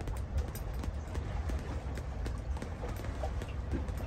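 Small boat running on open water: a steady low rumble with irregular light taps and knocks from the boat and its canvas and clear vinyl enclosure.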